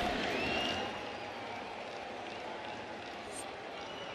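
Ballpark crowd noise: a murmur of the crowd with some applause, dropping lower after about a second.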